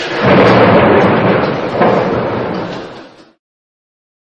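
Heavy storm seas crashing against a ship's bow: a loud rumbling roar that surges about a fifth of a second in and again near two seconds, then fades out and stops about three seconds in.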